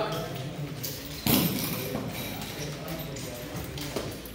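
Nunchaku being swung through a wrist-roll combo of a half wrist roll and an outside spin: a sudden swish about a second in, then light knocks and taps of the sticks as they are handled and caught.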